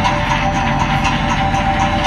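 Live improvised experimental rock jam: a dense, noisy band texture with two sustained droning notes held steady and a faint high tick about four times a second.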